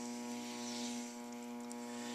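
Electric potter's wheel motor humming steadily as the wheel spins.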